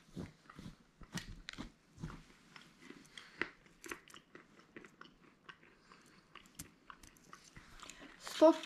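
Faint, irregular clicks and crackles of close handling, with no steady sound beneath them.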